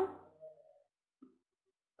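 The end of a spoken question trailing off in the first half second, then silence with one faint, very short blip about a second in.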